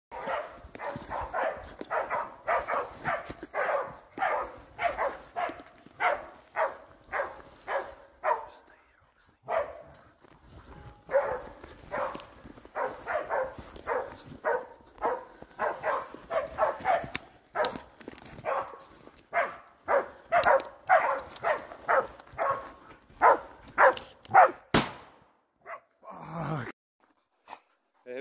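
Pig-hunting dog barking over and over, in short sharp barks about two to three a second, with a brief pause about nine seconds in.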